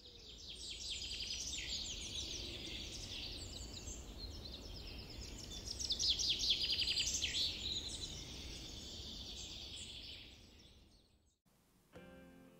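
Woodland birdsong: many birds chirping and calling together over a low ambient rumble. It fades in at the start, is loudest a little past the middle, and fades out near the end.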